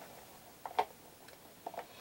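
A few faint, short clicks over quiet room tone, the loudest a little under a second in and two smaller ones near the end.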